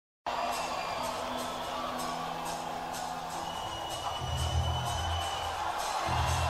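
Live rock concert recording: an audience cheering over sustained instrument tones, with deep bass notes coming in about four seconds in.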